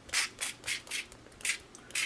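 Fine-mist spray bottle pumped in about six short hissing squirts in quick succession.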